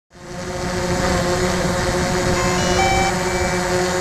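DJI Mavic quadcopter's motors and propellers running, a steady buzzing hum with a clear pitch.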